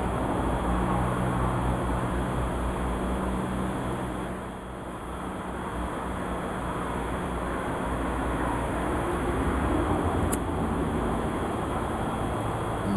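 A steady low mechanical hum under a wash of rushing noise, easing slightly about four to five seconds in and then building back; a faint click near the end.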